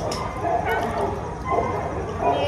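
A young Doberman giving a few short, high-pitched yips and whines.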